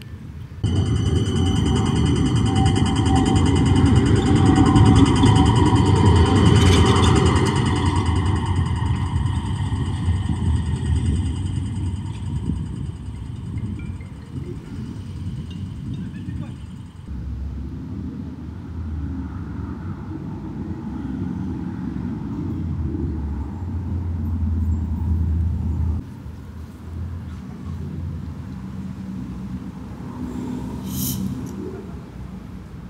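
Electric city tram arriving close by: a steady high whine from its drive over the rumble of wheels on rail, loudest about five seconds in. After about 17 seconds it gives way to the quieter rumble of street traffic.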